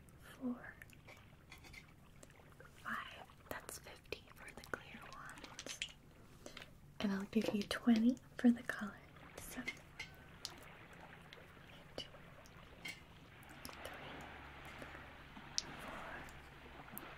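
Small toy gems clicking softly against each other and against fingertips as they are picked one at a time from a palm and counted, with a soft rustle near the end.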